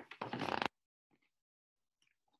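Paper rustling as a picture book's pages are handled and turned, a brief crackly rustle that stops short under a second in.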